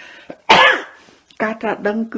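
A single short cough, about half a second in, from the person giving the talk, followed by speech starting again.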